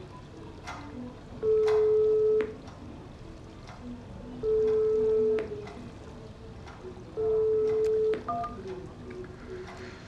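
Electronic sounds from a game on a smartphone, played through the phone's small speaker: short beeping notes that hop between pitches, broken three times by a long steady beep lasting about a second.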